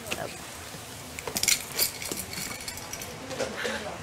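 Gift items being handled and unpacked at a table: small clinks and knocks, with a few sharp clinks about a second and a half in.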